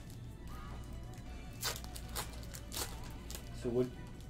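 Plastic wrapper of a trading-card pack being torn open and crinkled: three sharp crackles about half a second apart in the middle, over steady background music.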